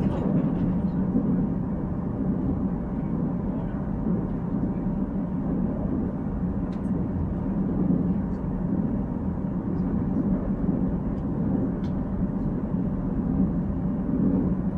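Steady low rumble of a Korail Nuriro electric multiple-unit train running, heard from inside the passenger car, with a few faint light clicks.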